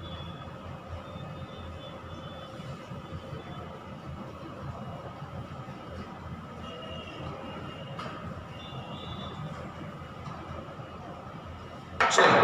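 Duster wiping a whiteboard: a steady, soft rubbing noise, with faint thin squeaky tones now and then.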